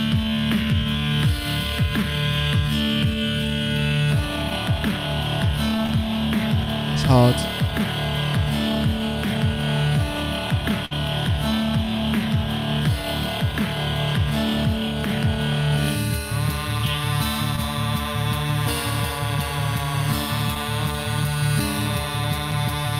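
Loopstation beatbox performance: layered mouth-made drum and bass loops running in a steady, electronic-style groove with looped vocal melodies on top. There is a sweeping vocal effect about seven seconds in, and the arrangement shifts to a new layer about three-quarters of the way through.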